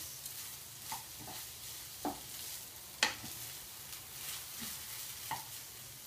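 Lentils, onion and celery sizzling steadily in hot oil in a frying pan as a wooden spoon stirs them to coat the lentils in the oil. The spoon knocks against the pan a few times, the sharpest about halfway through.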